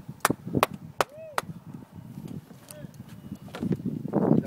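A few sharp knocks or clicks, about four in the first second and a half and fainter ones after, over a low background murmur.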